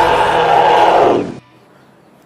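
Loud musical sting for a TV drama's title card, with a choir-like chant of voices, which cuts off suddenly about one and a half seconds in, leaving a faint low hum.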